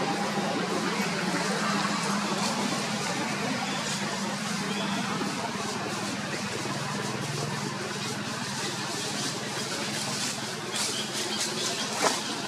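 Steady outdoor background noise with a low hum and indistinct voices; a few sharp clicks come in near the end.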